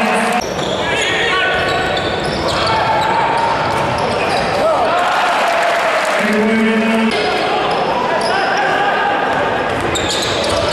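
Indoor basketball arena: a crowd of spectators shouting and calling out, with a basketball being dribbled on the hardwood court. A short held call rises above the crowd about six seconds in.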